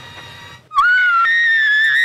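A woman's shrill, high-pitched scream, starting suddenly about two-thirds of a second in and held for about a second and a half. It jumps up in pitch partway through and falls away right at the end.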